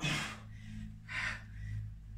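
A woman breathing hard while lifting a dumbbell: a sharp exhale at the start and another breath about a second later, the breathing of exertion in a full-body lift.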